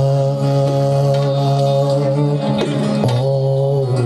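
Live Uzbek music played on an electric keyboard and a long-necked rubab lute, holding long sustained notes that shift pitch twice.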